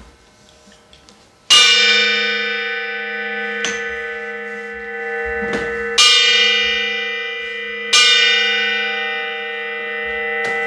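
A bell struck three times, about a second and a half in, at six seconds and at eight seconds. Each stroke rings on with a rich, lingering tone that fades slowly between strikes.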